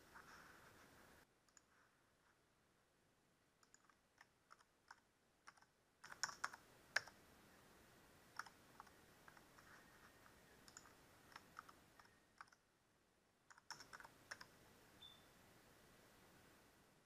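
Faint computer keyboard keystrokes: irregular clicks in several short runs with pauses, as a password is typed and then typed again to confirm it.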